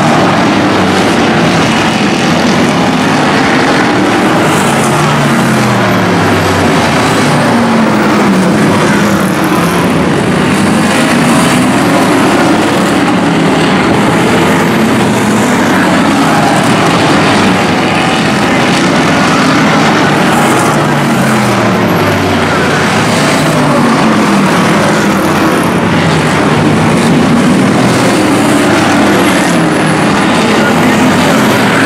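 A field of hobby stock race cars running hard on a short oval, several engines overlapping, their pitch rising and falling as cars pass.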